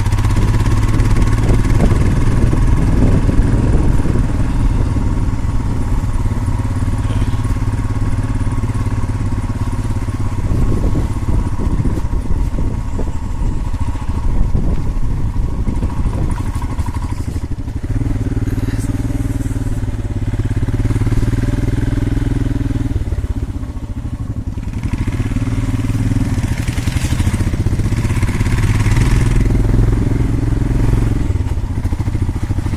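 Motorcycle engine running steadily while riding along, heard from the rider's own bike with wind on the microphone; the engine sound eases off briefly about two-thirds of the way through.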